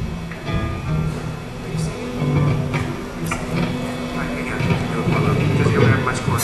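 Rock band members noodling on their instruments before a song: a few scattered held low notes from an amplified bass guitar, odd electric guitar notes and a few sharp cymbal or drum taps, with no steady beat, over voices in the hall.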